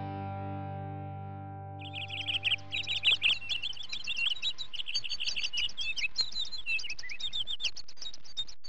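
A held music chord fades out over the first few seconds. About two seconds in, a dense chorus of birdsong begins, many rapid high chirps overlapping, and carries on.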